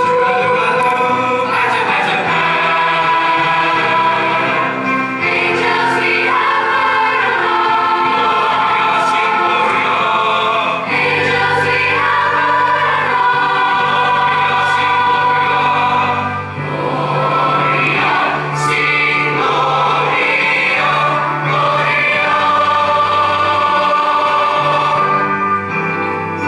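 A large mixed-voice jazz choir singing live, holding full chords that shift from one to the next, with male and female voices together.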